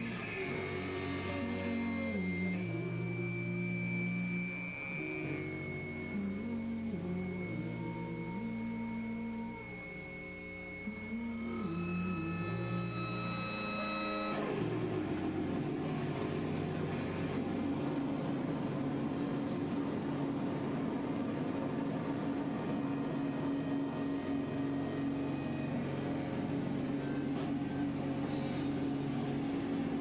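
Indie rock band playing live on electric guitars, heard through a camcorder microphone. Sustained guitar chords shift from one to the next, then about fourteen seconds in the sound thickens into a denser, noisier wall of guitar that holds to the end.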